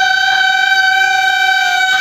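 Male folk singer holding one long, steady high note into a microphone, amplified through the stage PA.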